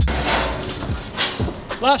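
Metal rattling and knocks as a corrugated roofing-iron sheet is handled, with steps on the iron roof, under the tail of background music; near the end a man calls out a drawn-out "Last".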